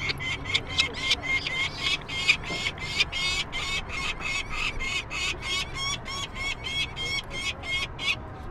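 Downy peregrine falcon chicks calling over and over while held in a person's hands, a fast, even run of sharp, high calls at about four a second.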